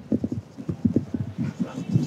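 Marker pen writing on a whiteboard: a quick, irregular run of dull taps and knocks, about ten a second, as the letters are stroked onto the board.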